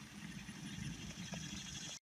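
Faint outdoor background noise: a low, uneven rumble with a light tick about a second and a half in, cutting off abruptly at the end.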